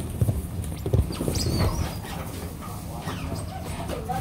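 A group of otters scrambling and bouncing against a wall, with irregular thumps and scuffs of paws and bodies on the wall and floor mat. A short high squeak comes about a third of the way in.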